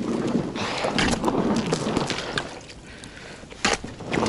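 Thin river ice cracking and crunching as an inflatable PVC boat is pushed through it and an ice chisel breaks the edge ahead: a dense run of sharp crackles for the first two seconds or so, quieter for a moment, then one loud crack near the end.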